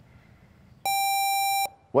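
Quiz-bowl buzzer system sounding one steady electronic beep, just under a second long, as a player buzzes in to answer.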